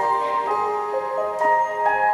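A rock band playing live, in an instrumental passage before the vocals come in: held, ringing melodic notes that change pitch every half second or so.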